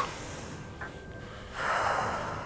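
A person's breathy exhale, a sigh, rising about one and a half seconds in.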